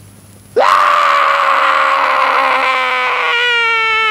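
A loud, long scream breaks out suddenly about half a second in and is held on one slowly falling pitch, growing cleaner in tone near the end.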